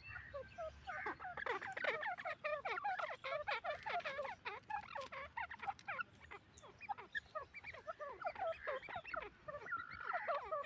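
Grey francolins (titar) calling: a dense chatter of many short, overlapping chirping notes, thinning out for a few seconds after the middle and building again near the end.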